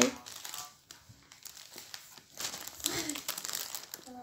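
Thin clear plastic bag of pastries crinkling as it is handled, in short irregular rustles that come and go.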